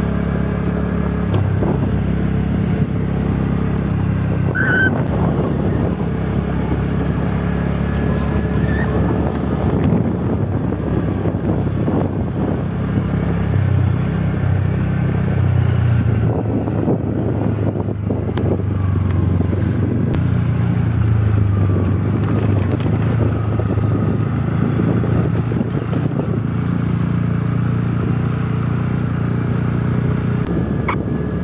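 Motorcycle engine running while riding, a steady low engine note that shifts in pitch a few times with changes in throttle.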